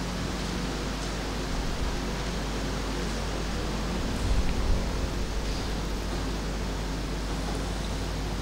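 Steady hiss of the microphone and room background with a low electrical hum, and a brief slightly louder stir about four seconds in.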